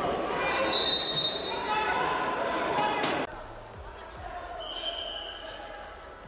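Wrestling referee's whistle, one short blast about a second in, over loud arena voices. After a cut the hall sound is quieter, and a second, lower whistle sounds near the end.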